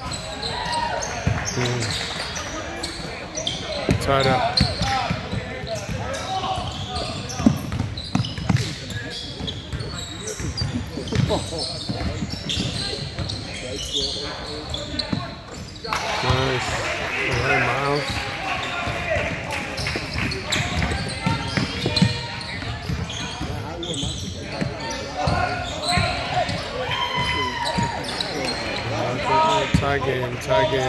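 Basketball being dribbled and bouncing on a hardwood court, mixed with players' and spectators' voices, echoing in a large gym.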